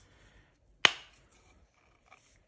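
A single sharp click a little under a second in, fading quickly. It comes from a handmade knife's brass-fitted handle meeting the brass mouth of its wooden sheath as the blade is seated or drawn.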